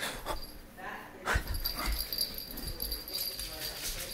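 A small Yorkshire terrier's excited vocalising while it is chased in play, with the thuds of running footsteps and knocks.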